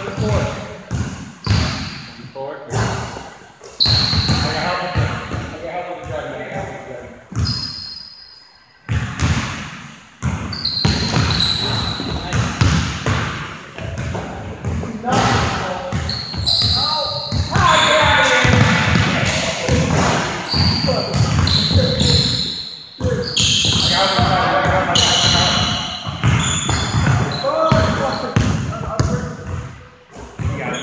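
A basketball bouncing repeatedly on a hardwood gym floor during play, with shoes squeaking and players' voices in the hall.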